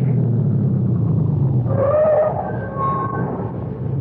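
Radio-drama sound effect of a car engine running, then winding down as the car pulls up, with a short squeal of brakes about halfway through as it comes to a stop.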